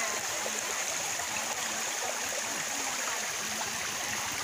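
Shallow rocky stream running over stones: a steady rush of flowing water.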